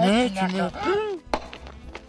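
A voice crying out loudly with rising and falling pitch for about a second, then a single sharp knock, followed by faint quick taps of footsteps on gravel.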